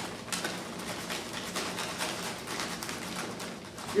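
Popped popcorn being shaken from paper microwave-popcorn bags into rolled-paper cylinders: an irregular light patter and rustle of kernels and crinkling bags.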